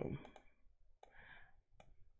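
A few faint computer mouse clicks, a pair about a third of a second in and one more near the end.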